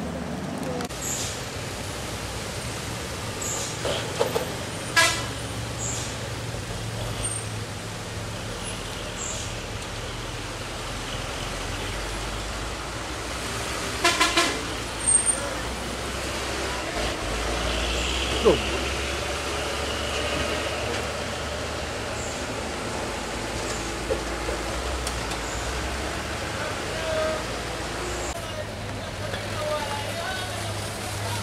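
Road traffic: vehicle engines running, with a deeper engine drone through the middle stretch. Short vehicle horn toots sound about five seconds in and again a couple of times around fourteen to fifteen seconds in.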